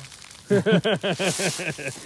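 A person laughing loudly in a quick run of about ten short 'ha' pulses, starting about half a second in.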